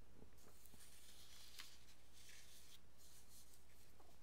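Faint room tone with a low hum and a few soft scrapes and small clicks, about the level of near silence.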